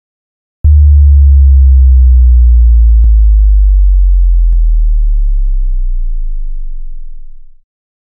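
A very loud, deep sub-bass hit for a production logo: it starts suddenly under a second in, then fades slowly for about seven seconds, with two faint clicks along the way.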